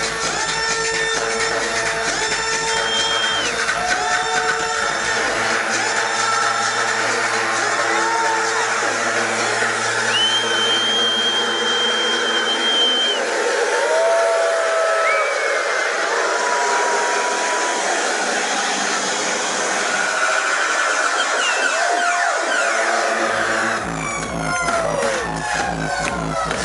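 Electronic dance music from a club sound system, in a breakdown. The bass and kick drop out about six seconds in, leaving higher synth tones and sweeping noise. The low end returns near the end under a fast run of repeated hits as the track builds back up.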